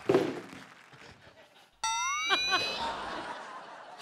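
Studio audience laughter that fades out, then a sudden loud whoop about two seconds in, its pitch sliding upward.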